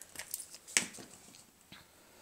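Soft rustling of a scrunched scrap of printed craft paper being handled, with a few small clicks and one sharper tap about three-quarters of a second in.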